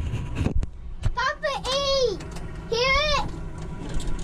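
A child's high voice giving two long cries, each rising and falling, about a second in and again near the end. Under them is a steady low rumble from the exhibit truck cab's simulated engine, just switched on.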